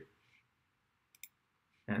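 Two quick, sharp computer mouse clicks about a second in, a fraction of a second apart.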